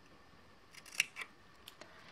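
Scissors snipping through scrapbook paper: a quick run of snips about a second in, the loudest right at one second, then two faint clicks near the end.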